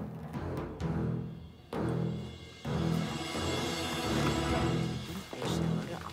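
Dramatic background score: a low, beating pulse comes about once a second, and the full orchestral sound swells in about two and a half seconds in.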